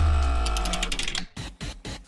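Short musical transition sting: a deep sustained tone with steady higher ringing notes and a quick ticking, fading out a little over a second in, then a few faint clicks.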